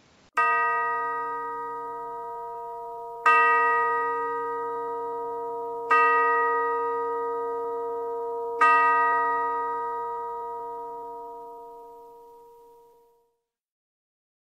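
A bell-like chime struck four times on the same note, about every two and a half to three seconds, each stroke ringing on and fading; the last rings out slowly and dies away near the end.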